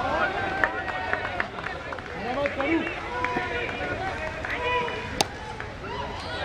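Several voices of players and onlookers shouting and calling across an open field, overlapping, with a single sharp crack a little after five seconds.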